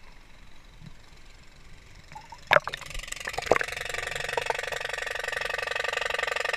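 Faint poolside ambience, then about two and a half seconds in a sharp splash-like knock and a few clicks as the camera goes under the surface of a swimming pool, followed by steady muffled underwater water noise.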